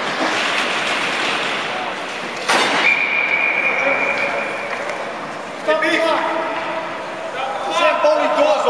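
Ice hockey referee's whistle: one long steady blast about three seconds in, right after a sharp knock, stopping play. Skating and rink noise come before it, and voices start up near the end.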